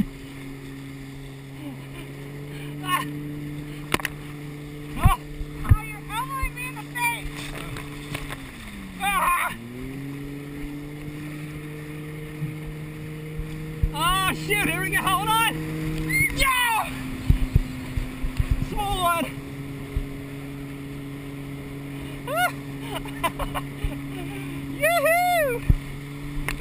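A towing motorboat's engine drones steadily ahead, its pitch sinking and climbing back about nine seconds in as the throttle is eased and reapplied. Water slaps and wind thump against the towed rider's camera, and short high cries come from the riders.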